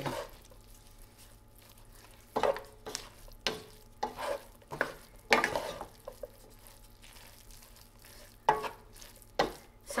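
Two wooden spoons scraping and turning a thick breadcrumb-and-vegetable stuffing in a nonstick frying pan, in short irregular strokes.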